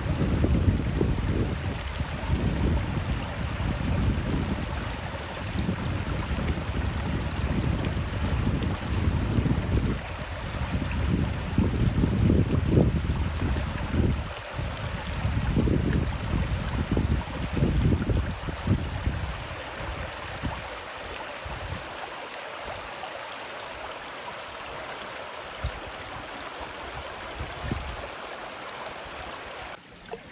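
Shallow river water running and rippling over a rock bed, a steady hiss. Gusts of wind rumble on the microphone for most of the time, dying away about two-thirds of the way through.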